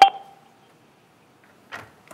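A sharp, loud double knock with a brief ringing tone, like a hard object struck against the table or the microphone. A soft rustle comes near the end.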